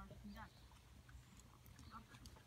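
Faint hoofbeats of a ridden horse cantering on a soft arena surface.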